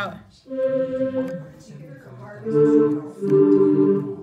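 Casio LK-160 electronic keyboard sounding held notes and chords on its choir voice tone. A single sustained note comes in about half a second in. A fuller chord follows about halfway through, and it changes again near the end.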